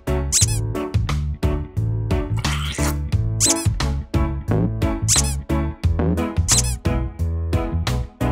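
Upbeat children's background music with four short, high squeaks from a squeezed yellow rubber duck, each falling in pitch.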